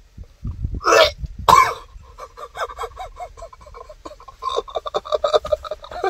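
A man gagging: two loud, short retching heaves about a second in, then a fast run of short voiced pulses, laughter or gurgling through foam in his mouth.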